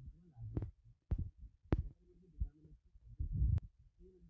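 A series of about five low thuds, each with a sharp click, roughly half a second apart. The loudest and longest comes a little past three seconds in.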